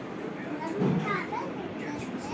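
A young child's voice, a short high-pitched vocal burst about a second in, over steady background noise.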